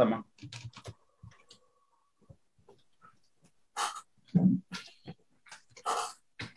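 Scattered computer keyboard key clicks as a terminal command is typed, after a spoken "Answer" at the start. A couple of short vocal sounds about four seconds in are the loudest part.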